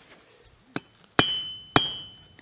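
Two hammer blows about half a second apart on a thin brass rod laid across a steel anvil, each with a bright metallic ring that fades away, after a light click. The blows are an impact test of the rod's brittleness.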